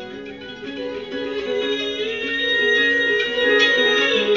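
Harp played live: a repeating figure of plucked notes in the low-middle range. From about halfway, a long high note is held over it and the music grows louder.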